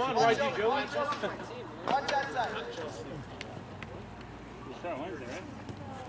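Indistinct voices of people talking and calling out, loudest in the first couple of seconds and fainter after, over a steady low hum.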